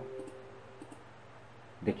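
A couple of faint computer mouse clicks.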